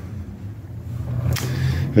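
A low steady rumble, with a short breathy noise about one and a half seconds in.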